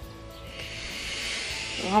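A hissing noise that swells steadily from about half a second in.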